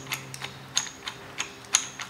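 A series of light, sharp clicks as the threaded screw and plastic pad of a desk clamp mount are turned and handled by hand.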